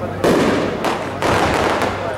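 Aerial fireworks shells bursting overhead: two sharp bangs about half a second apart, each trailing off in a fading echo.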